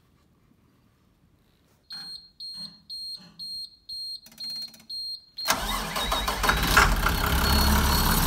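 School bus warning buzzer beeping steadily about two to three times a second with the key on. About five and a half seconds in, the bus engine starts and keeps running, with the beeping still faintly audible under it. The bus starts even with the emergency-exit interlock wires pulled off.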